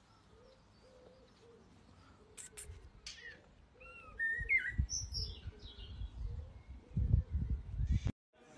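Birds chirping and calling in short, gliding notes, with low rumbling bumps on the microphone in the second half.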